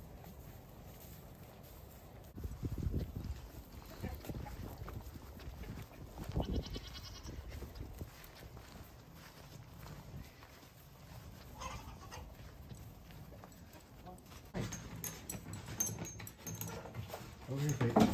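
Cattle calling with bleat-like calls, with low thuds in between.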